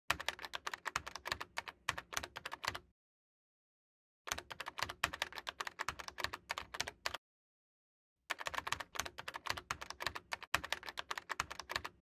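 Computer keyboard typing sound effect: rapid key clicks in three bursts of about three seconds each, with a silent gap of a second or so between them, as lines of text are typed out.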